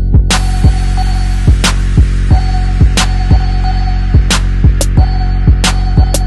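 Electronic outro music: a loud, steady bass drone with a mid-pitched tone held over it, punctuated by sharp drum hits with deep, dropping tails two or three times a second.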